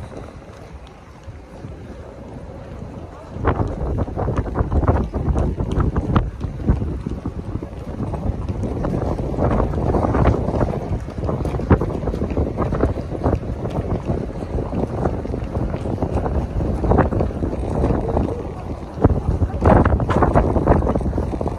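Wind buffeting the microphone of a walking handheld camera, a rough low rumble that comes in suddenly a few seconds in and swells in gusts, over the murmur of passers-by on a pedestrian street.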